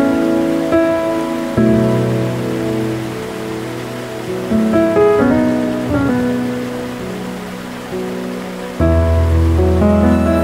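Slow, gentle solo piano music, notes and chords ringing and fading one after another, over a steady rushing water sound of a waterfall. A deep low chord comes in near the end.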